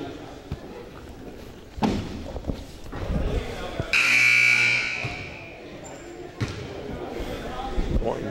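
Gym scoreboard buzzer sounding once for about a second, about four seconds in, the horn for a substitution at the dead ball. A basketball bounces on the hardwood a couple of times around it.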